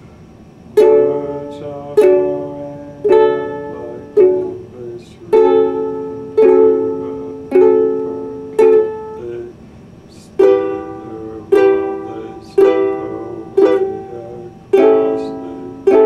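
Ukulele played slowly, one chord about every second, each struck sharply and left to ring and fade, the chords changing as it goes. It starts just under a second in, with a brief pause about nine seconds in.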